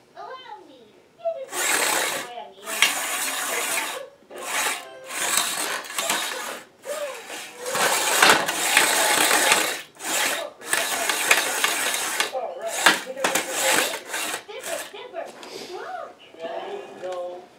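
Antweight wedge combat robot's small drive motors and wheels on tile, running in a dozen or so stop-start bursts of rough, hissy noise as it drives and shoves a loose object across the floor.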